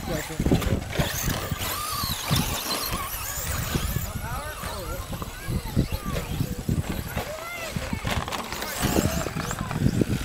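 Electric 2WD RC race cars running, their motors whining up and down in pitch again and again as they speed up and slow down, with people talking in the background.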